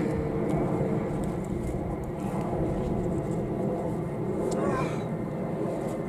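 Steady low rumble of distant engines, an urban outdoor background of traffic and aircraft.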